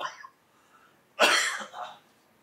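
A man coughing twice: a short cough at the start and a louder, longer one just over a second in.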